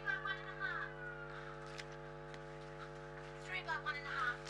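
Steady electrical hum on the audio line, with faint voices in the background near the start and again just before the end.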